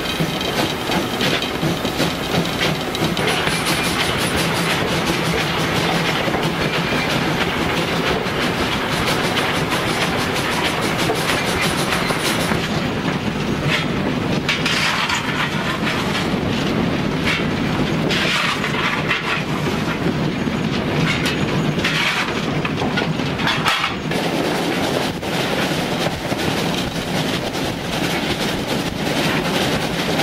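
Steam locomotive running at speed, heard from the cab: a steady rumble with wheels clattering over the rail joints. Through the middle stretch the sound changes, with a few separate noisy bursts of a second or two.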